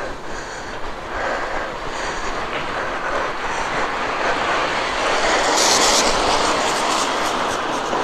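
Steady rushing noise of riding a bicycle along a street, wind and tyre noise on a camera carried on the bike, swelling slightly toward the middle with a brief brighter hiss a little past halfway.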